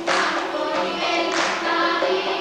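Mixed male and female folk choir singing a traditional Armenian song together, with sharp rhythmic accents twice.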